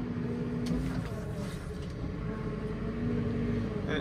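Diesel engine of a JCB TM telescopic loader running steadily as it drives slowly, heard as a low, even hum from inside its cab.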